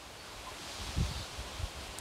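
Faint outdoor ambience: leaves rustling in a light breeze, with a soft low rumble.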